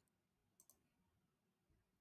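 Near silence, with two very faint clicks of a computer mouse button about half a second in.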